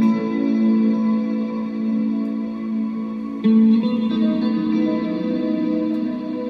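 Stratocaster-style electric guitar played through reverb and echo effects, letting long notes ring and sustain over a looping recorded guitar track; a new chord is struck about three and a half seconds in.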